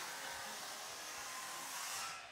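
Steady hissing, rushing noise with no clear pitch, fading out right at the end.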